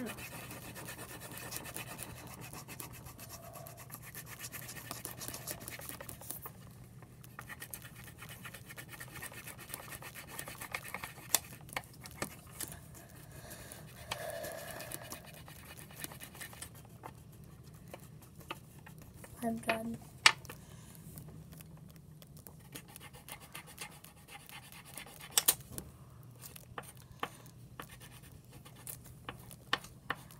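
Pencils scratching on paper in quick strokes, drawing or colouring, with scattered sharp taps and clicks of the pencils on the table. A low steady hum runs underneath.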